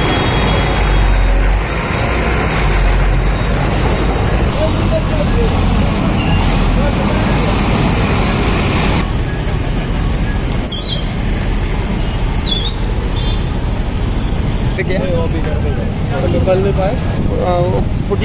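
Loud, steady rumbling outdoor noise from a pipeline repair site, like a running engine or nearby traffic. It changes character about halfway through, a couple of short high chirps come around two-thirds of the way in, and men's voices rise over it near the end.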